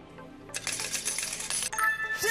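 Game-show sound effect for the answer reveal: after a moment of near-quiet, about a second of bright, jingling shimmer like cascading coins, then a cut to a ringing chime near the end, marking the final word revealed as correct.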